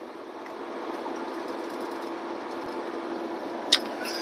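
Steady road and engine drone heard inside a semi-truck's cab while driving at highway speed, with a steady low hum running through it. A short click comes near the end.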